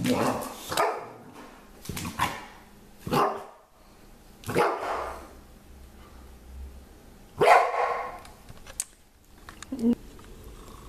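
A dog barking in short single barks about a second apart, then a pause of a few seconds before the loudest bark.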